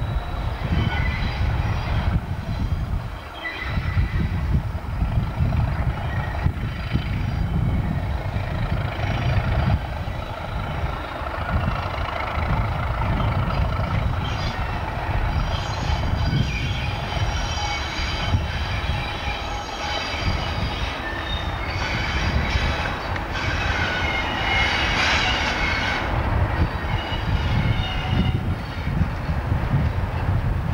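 A Class 37 diesel locomotive hauling coaches, its engine rumbling as it works round a tight curve. From about halfway in, the wheels squeal on the curve, loudest a few seconds before the end.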